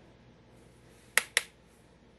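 Two sharp clicks about a fifth of a second apart, a makeup brush knocking against a plastic powder palette as it picks up highlighter.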